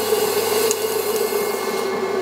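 Electric potter's wheel running at speed, a steady motor hum while wet clay is worked on the spinning wheel head.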